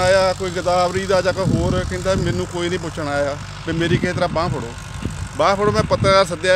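A man talking, over a steady low engine drone.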